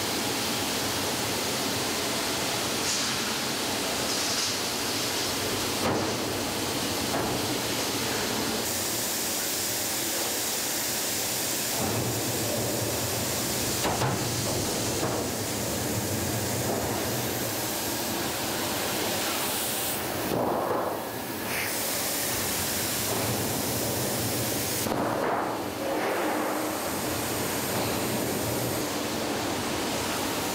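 Steady machine noise of a car-body press shop, where large sheet-metal stamping presses run, with a few sharp knocks along the way.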